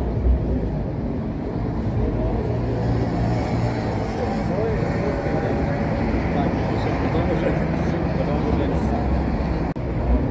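Road traffic: cars driving past on a city street, a steady rumble of engines and tyres.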